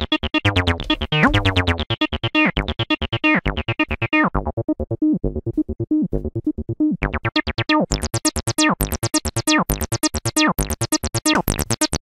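Cyclone Analogic TT-303 Bass Bot bass synthesizer playing a sequenced acid bass line of rapid short notes. Its filter is closed down to a dull, muffled tone around the middle, then opened up bright and buzzy in the second half as the knobs are turned.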